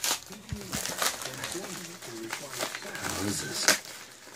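Handling noise: scattered clicks and light crinkling, with a sharper click near the end, under faint, quiet voices.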